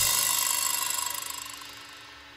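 A rock band's last chord ringing out after the band stops together at the end of a song. Guitar and cymbal tones hang on and fade away steadily, with a slight pulsing as they die.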